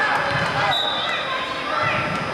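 A volleyball being bounced on a hardwood gym floor before the serve, dull thuds under the chatter of voices in a large gym.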